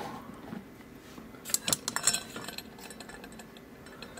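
Small metal parts clinking: the cam and its two tiny screws taken off a mortise lock cylinder being handled and set down on a mat. A quick cluster of light clicks comes about a second and a half in.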